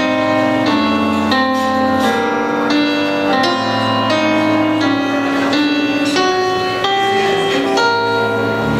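Piano introduction played on an electronic keyboard: slow, evenly paced chords, a new one about every two-thirds of a second, over a held bass line, with no voice yet.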